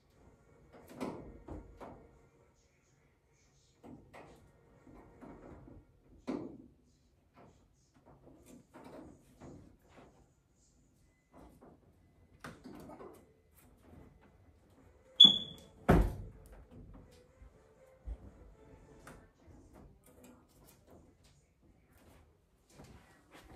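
Scattered clicks, rattles and knocks of hands working on parts inside a top-loading washing machine's opened cabinet while a clip is taken out. The loudest is a sharp metallic snap with a brief high ring about fifteen seconds in, followed at once by a heavy thump.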